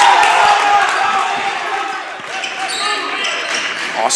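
A basketball being dribbled on a hardwood gym floor during live play, repeated short bounces, with voices in the gym behind it.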